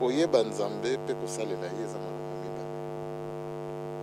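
Steady electrical mains hum, a buzz with many even overtones, running under the recording. A man's voice speaks over it for the first two seconds, then the hum is heard alone.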